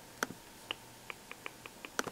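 A quick run of light, sharp clicks, about eight in two seconds, from controls being worked to browse a music library.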